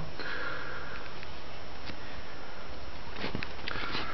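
Steady background hiss with a short nasal breath near the start, and a few faint light clicks from the guitar body being handled and turned.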